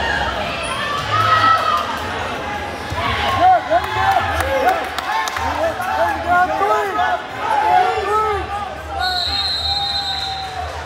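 Gym crowd and mat-side coaches shouting over one another, many overlapping yells echoing in the hall, with a few scattered thumps. A short high steady tone sounds near the end.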